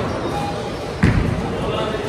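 A bowling ball released onto the lane, landing with one sudden thud about a second in and then rolling, over people talking.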